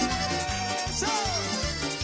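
Cuarteto dance music played live by a band with two accordions over a steady pulsing bass beat and percussion. A long held melody note gives way to a falling phrase about halfway.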